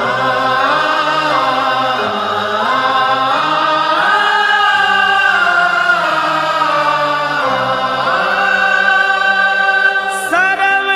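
Opening of a Hindi devotional song: a voice singing slow, long-held notes that glide between pitches, over a steady sustained drone, with no beat yet.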